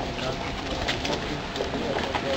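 Footsteps of a crowd walking on a paved path, scattered shoe clicks, with faint low voices murmuring.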